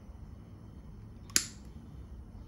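A single sharp metallic click a little past halfway, with a brief ring: a small spring retaining clip snapping onto the throttle linkage pin as the pliers let it go.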